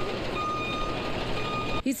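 School bus reversing alarm sounding in long, steady beeps, each about a second and a half with a short gap between, over the low rumble of the bus's diesel engine. The sound cuts off suddenly near the end as speech begins.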